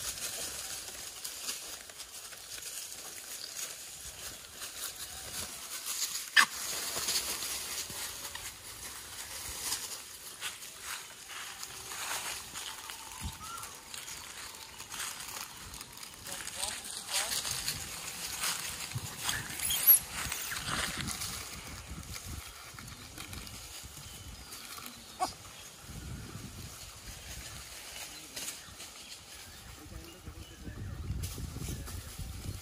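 A troop of gray langurs moving about on a plastic tarp and dry leaf litter: irregular rustling and crackling of leaves and plastic, with two sharper, louder snaps, about six seconds in and about twenty seconds in.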